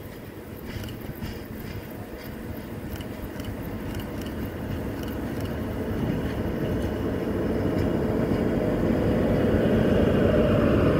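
SM42 diesel-electric shunting locomotive approaching at low speed, its diesel engine running with a low rumble that grows steadily louder as it draws close.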